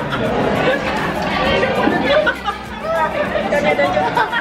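People talking, with voices overlapping against the chatter of a busy dining room.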